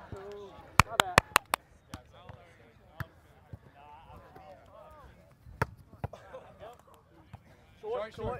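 A volleyball being struck by players' hands and forearms on a grass court, heard as sharp slaps. There is a quick run of them about a second in, then single ones near three, five and a half and six seconds, over faint voices of players.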